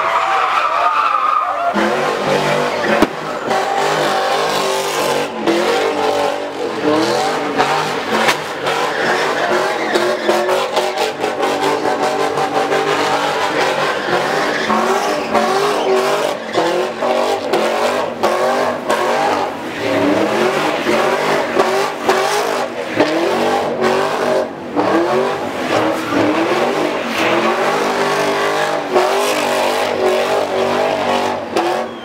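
A car's engine revving hard, its pitch climbing and dropping again and again, with tires squealing as the car spins donuts in its own tire smoke.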